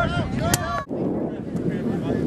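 Shouting voices, with wind on the microphone; the sound drops out briefly just under a second in, and wind noise with faint distant voices follows.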